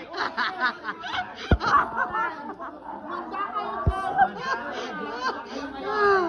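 A group of people chattering and laughing, several voices overlapping, with two brief low thumps about a second and a half in and again near four seconds in.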